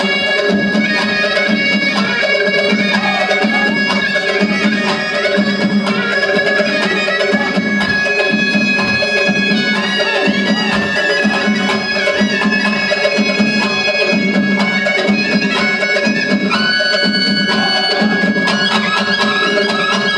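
Traditional Armenian folk dance music: a reedy wind melody over a steadily held drone, with a regular drum beat underneath.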